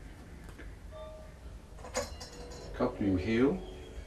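A single sharp click about two seconds in, over a low steady hum, from the painter handling his paint materials while preparing yellow paint. About a second later comes a short burst of a man's voice.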